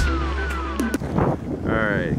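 Background music ending about a second in with two falling gliding tones over a steady bass. Then outdoor ambience, with a voice starting near the end.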